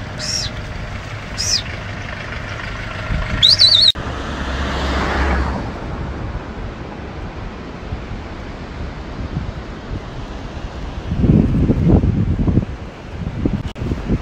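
For the first four seconds, a flock of sheep moves along the road with a few short, high chirps over it. After a cut, there is the rushing wind and road noise of a motorcycle ride, heard on a phone microphone, with gusts buffeting the microphone a few seconds before the end.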